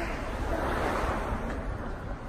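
Outdoor wind buffeting the phone's microphone, with a rushing noise that swells and fades about a second in.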